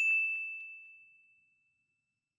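Notification-bell 'ding' sound effect of a subscribe-button animation: one bell-like strike at a single high pitch, ringing out and fading away over about a second and a half.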